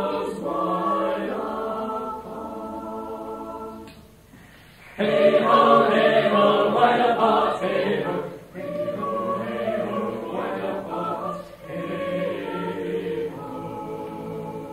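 A choir singing in several parts. About four seconds in there is a brief near-pause, and then the voices come back in louder.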